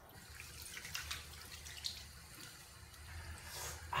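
Faint sound of a tap running into a bathroom sink, with a few small splashes as water is scooped up and splashed onto a face.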